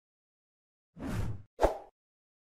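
Animation sound effects: silence for about a second, then a short whoosh followed by a sharper, louder pop.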